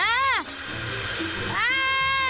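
A cartoon character's high, wavering cry, then about a second of loud hiss as a hot baking dish sizzles on the countertop, then another long, held cry near the end.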